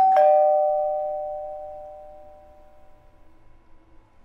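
Doorbell chime going ding-dong at the start, a higher note then a lower one, each ringing on and fading away over about three seconds.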